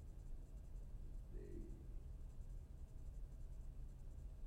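Quiet room tone with a steady low hum, and one brief faint sound about a second and a half in.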